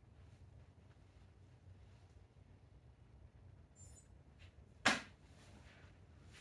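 Quiet garage room tone with a low hum, a faint short high beep about four seconds in, then a single sharp smack about a second later.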